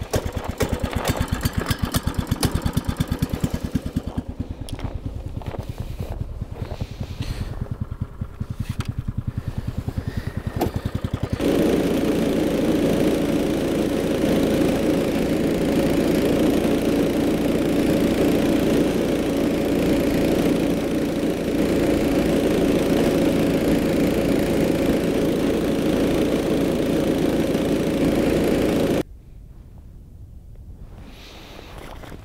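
Power ice auger at work: a fast rhythmic pulsing for the first eleven seconds, then a loud steady motor drone as it bores a hole through the lake ice, starting abruptly and cutting off just before the end.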